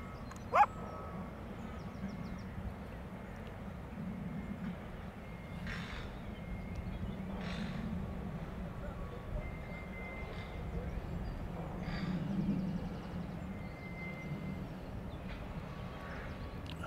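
A dog gives one short, sharp yelp about half a second in, over a steady low background rumble.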